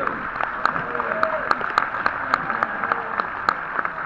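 Audience applauding, with one pair of hands clapping loudly close by at about three claps a second and a few voices calling out over it.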